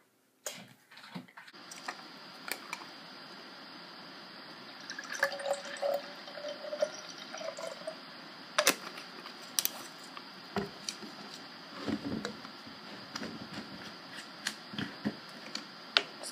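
Liquid poured from a bottle into a tall glass, with a few sharp clicks from handling the bottle and glass.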